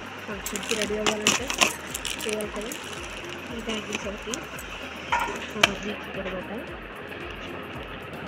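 Bangles clinking and a clear plastic bangle box clicking as they are handled: a cluster of clinks about a second in, and two sharp clicks past the middle. A voice carries on underneath.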